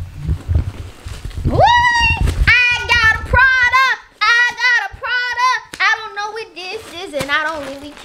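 A high-pitched wordless voice: a rising squeal about a second and a half in, then a run of short sung notes that bend up and down. A low rumble of handling noise comes before it.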